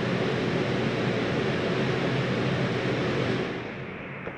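RV air conditioner running with a steady rush of air and a low hum, then winding down about three and a half seconds in after being switched off at the thermostat.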